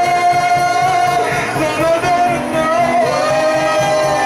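Live worship music: a man singing long held notes through a microphone and PA, over keyboard and band accompaniment with a steady beat.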